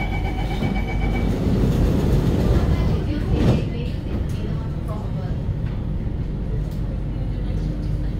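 Door-closing warning beeps on an SMRT Circle Line C830C train, sounding rapidly for about the first second. The doors then slide shut with a thud about three and a half seconds in, over the steady rumble of the train at the platform. A low steady hum begins near the end.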